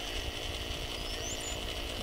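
Small electric rotisserie motor running steadily as it turns the vertical spit, with wind rumbling on the microphone.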